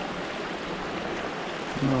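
Stream water running over a shallow, broken stretch beside the bank: a steady, even rush.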